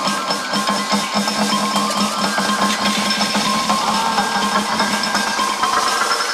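House music from a continuous DJ mix, with a steady beat and sustained synth and bass tones.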